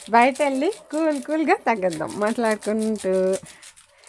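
A woman talking in Telugu in short, lively phrases.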